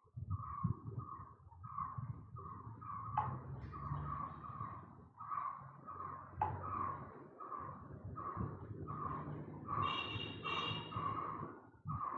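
A bird calling over and over in short chirps, about two to three a second, with a higher, stacked call near the end.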